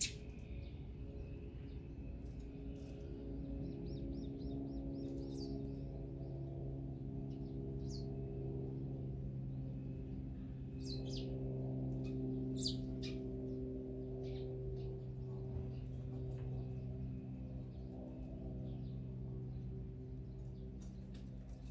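Small songbirds chirping in short scattered calls, with a quick run of repeated notes early on and a few sharp calls about halfway through, over a steady low hum of several held tones.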